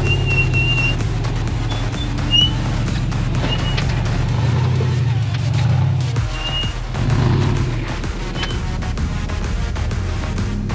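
Rock crawler buggy's engine running under load as it climbs a steep rock ledge, with background music mixed over it. A few short high squeaks sound through the first half.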